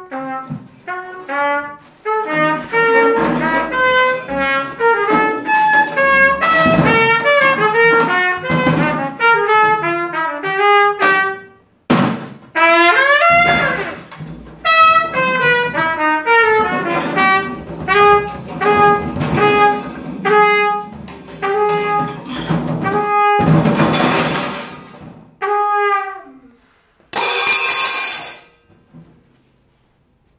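Free-jazz improvisation: a trumpet plays quick, broken runs of short notes while a large floor tom is struck, at first with a cymbal lying on its head. Loud noisy crashes come twice near the end.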